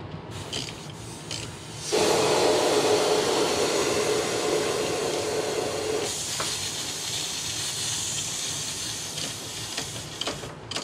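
Hiss of leftover refrigerant escaping from an AC compressor line fitting as it is loosened with a ratchet. After a few light clicks, the hiss comes on suddenly and loud about two seconds in, then after about four seconds eases into a thinner, higher hiss.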